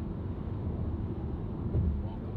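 Car cruising at highway speed, heard from inside the cabin: a steady low rumble of tyre and engine noise.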